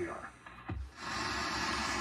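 Steady hiss of HF radio receiver static from the station speaker, cutting in suddenly about a second in.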